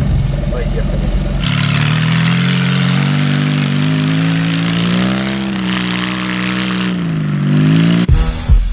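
Car engine running just after being started, then, about a second and a half in, revving hard and held at high revs, its pitch rising and falling slowly for several seconds.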